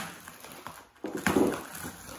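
Plastic bubble wrap and packing tape crinkling and rustling as hands pull at the packaging in a cardboard box, opening with a sharp click.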